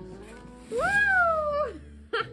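A house cat giving one long meow, about a second in, that rises and then falls in pitch.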